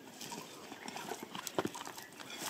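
Wooden digging stick scraping and knocking among stones and dry soil: faint scratching, then two sharper knocks about one and a half seconds in.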